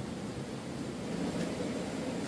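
Steady rushing of a shallow stream running over rocks.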